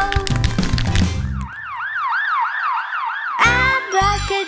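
Cartoon ambulance siren sound effect: a fast, repeating rise-and-fall wail, about three cycles a second, lasting about two seconds in the middle, between stretches of children's song music.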